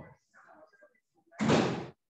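Faint indistinct voice on a video call, then a sudden loud burst of noise, like a knock or slam on a participant's open microphone, about one and a half seconds in and lasting about half a second.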